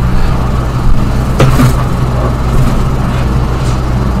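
A steady low rumble with a brief, faint sound about a second and a half in.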